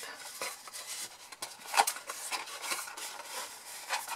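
Folded cardstock being handled and shaped into a box, the card rustling and rubbing against itself and the board, with a sharper tap a little under two seconds in.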